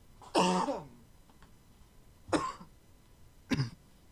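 A man coughing and clearing his throat in three spells. The first, about a third of a second in, is the longest; two short ones follow, the last near the end.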